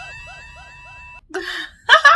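Cartoon knockout sound effect from an anime: a steady ringing tone over a rapid run of little chirping, warbling notes, a dazed, seeing-stars gag. It cuts off abruptly just over a second in, and a woman laughs near the end.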